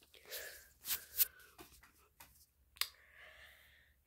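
Handling noise from a phone camera being moved and gripped: soft rubbing and rustling, with a few short, sharp clicks, the loudest about a second in.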